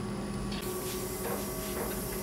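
Steady mechanical hum of workshop equipment, with a few faint ticks.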